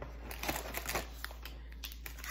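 A cardboard snack box being opened and a plastic-wrapped snack bar pulled out of it, with irregular rustling and crinkling of the wrapper and packaging.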